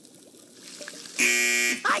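A short, loud buzzer tone, flat in pitch, about half a second long a little past the middle.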